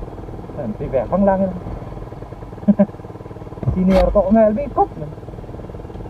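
A voice talking in short bursts over the steady drone of a motorcycle engine and wind while riding. There is a brief sharp knock with a low thump about four seconds in.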